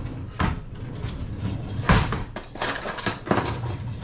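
A few sharp knocks and clatters of things being handled in a kitchen, the loudest about two seconds in.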